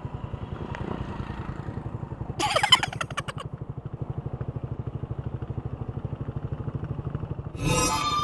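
Small motorcycle engine running steadily under way, with an even rapid pulsing. A short loud pitched sound cuts in about two and a half seconds in, and another near the end.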